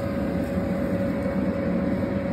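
Electric air blower keeping an inflatable bounce house inflated, running steadily: an even low rumble with a faint constant hum above it.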